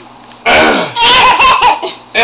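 A baby making a gruff, throaty throat-clearing noise, imitating a grown man, about half a second in, followed by a longer burst of laughter.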